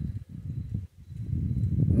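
Wind buffeting the microphone: a low, irregular rumble of rapid thumps that drops out briefly about a second in.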